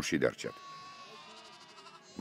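Faint bleating of penned livestock, after the voice stops about half a second in.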